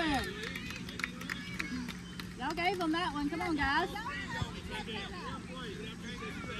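Several high-pitched voices calling and shouting over background chatter, loudest about two and a half to four seconds in, with a steady low hum underneath.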